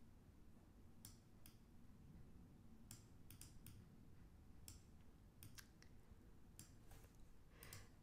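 Faint, irregularly spaced computer mouse clicks, about a dozen, over near-silent room tone.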